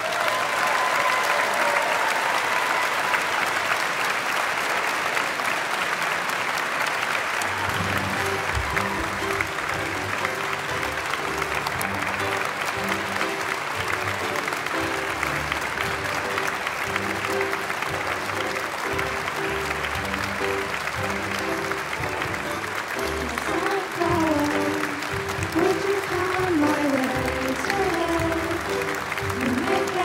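Audience applauding steadily. About eight seconds in, low steady musical notes come in underneath. In the last few seconds a higher melody line rises and falls over the applause.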